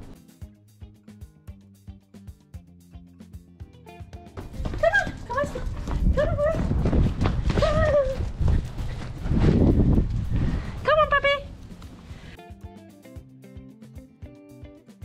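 Six-week-old Australian Cattle Dog puppies giving a handful of short, high yips between about five and eleven seconds in, over soft background music and a low rumbling noise.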